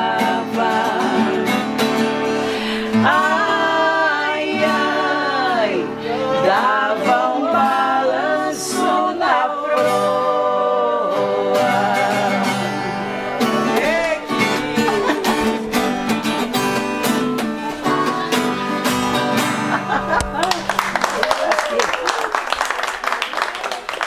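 Two women singing a moda de viola in two-part harmony over strummed acoustic guitars. The song ends about twenty seconds in and the audience applauds.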